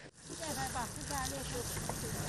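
Water sprinkling steadily from watering-can roses onto seedbed soil, a continuous hiss, with faint voices of people in the background.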